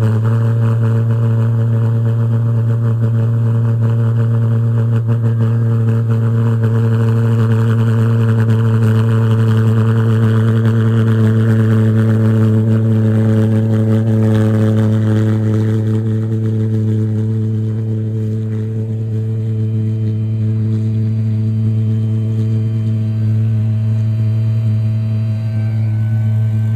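Twin pulse jet engines on a riding lawn mower running with a loud, steady low drone on one even pitch with overtones. The drone eases off slightly about two-thirds of the way through as the mower drives away.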